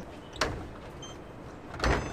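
Low steady outdoor background noise, with one sharp click about half a second in and a short low thump near the end.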